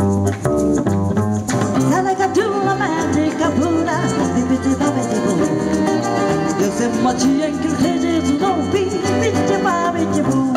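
Live band playing a Latin-flavoured song with bass and guitar, a woman singing from about a second and a half in, and small ganza shakers rattling along.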